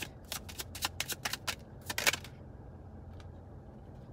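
Deck of tarot cards being shuffled by hand: a quick, irregular run of crisp card snaps and flicks that stops a little over two seconds in.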